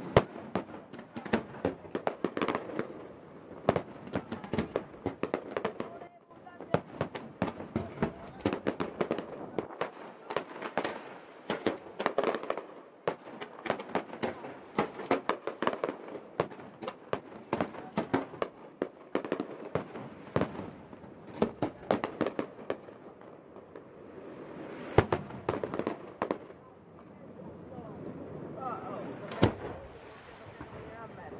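Aerial fireworks display: shell bursts and crackling follow one another in quick succession, with a few sharper, louder bangs, one of them near the end.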